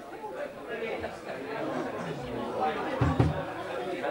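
Crowd chatter in a pub room, several voices talking over one another with no music playing, and a couple of low thuds about three seconds in.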